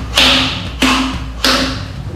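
Three sharp blows on a large wooden log, evenly spaced about two-thirds of a second apart, each with a short ring.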